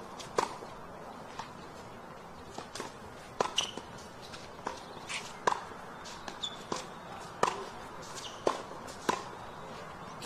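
Tennis rally: a ball struck back and forth by rackets and bouncing on the court, a string of sharp pops about one to two a second.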